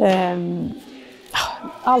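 A woman's voice: a drawn-out vowel that trails off, a pause, then the start of the next word. Speech only.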